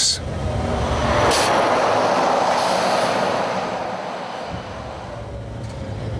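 Scania long-haul truck on the move, heard from inside the cab: a low engine hum under road and tyre noise. A broad rushing noise swells about a second in and fades away over the next few seconds.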